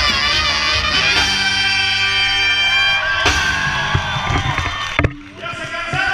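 Live banda brass section with trumpets playing, holding one long chord in the middle. There are two sharp knocks about five seconds in, followed by a brief drop in volume before the band sounds again.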